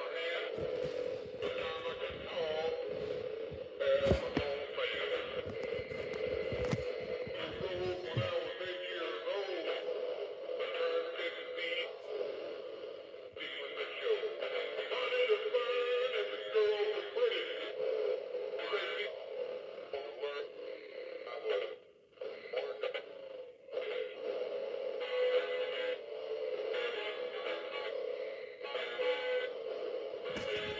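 Battery-powered animated singing figure playing a song through its small built-in speaker while running on low batteries; the sound is thin, with almost no bass, and briefly drops out about two-thirds of the way through.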